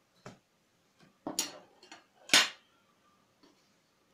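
A metal fork clinking against a glass dish and then being set down on a wooden table: about six short, sharp clicks, the loudest two about a second apart, roughly one and a half and two and a half seconds in.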